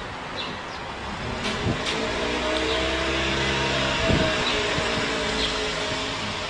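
A vehicle engine running at a steady speed, a low even hum, with a short knock about a second and a half in and another about four seconds in.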